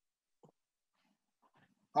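Near silence, a pause between words, broken by one faint short sound about half a second in; a man's voice begins right at the end.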